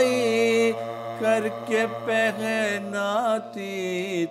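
A man's unaccompanied voice chanting an Urdu noha, a Muharram lament for Imam Husain, in long, slowly wavering melodic phrases with short breaks between them. A low, steady hum runs beneath.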